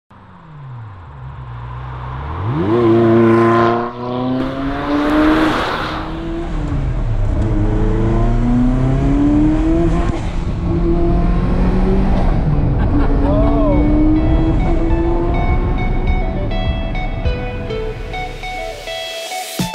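Ferrari sports car engine revving hard under acceleration. Its pitch climbs steeply, then drops off sharply at a gear change about four seconds in, followed by further rising pulls through the gears.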